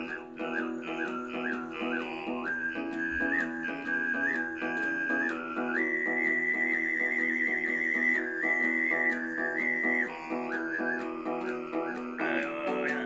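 Tuvan throat singing in the whistling sygyt style. A thin, whistle-like overtone melody rides above a steady low vocal drone, stepping higher about halfway, wavering there, and dropping back near the end. A long-necked lute is strummed steadily underneath.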